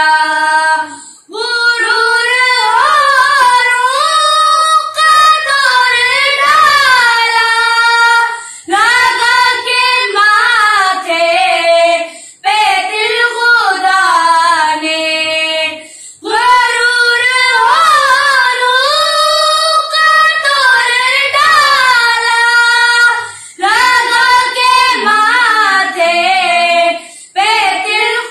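Two children, a girl and a boy, singing an Urdu naat together without instruments, in long melodic phrases broken by short pauses for breath every few seconds.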